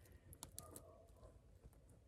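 Near silence, with a few faint clicks of metal purse-chain links touching as the chain-draped handbag is handled.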